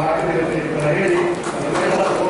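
A man reading a speech aloud into a handheld microphone, talking without pause.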